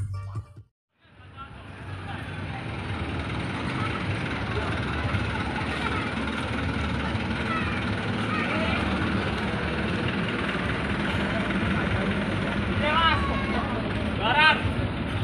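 Street ambience of a parade: a vehicle engine running with a steady low rumble, under scattered voices and calls from people nearby. It fades up about a second in, after a short silence.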